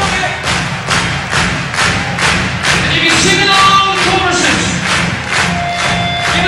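Live rock band playing an instrumental passage: a steady pounding beat of about two hits a second, with held pitched notes over it.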